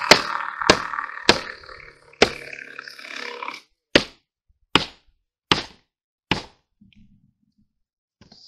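Eight sharp knocks a little under a second apart, as nails are driven into OSB roof decking.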